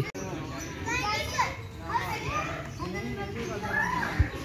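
Children's voices calling and shouting to each other as they play in an open park, higher-pitched and quieter than a close voice.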